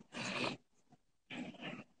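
Two short, soft breaths close to the microphone, each about half a second long, the second about a second after the first.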